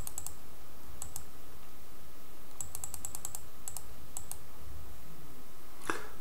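Computer mouse clicking in quick clusters of several clicks each, as dice rolls and bets are clicked in an online craps game. A faint steady hum lies underneath.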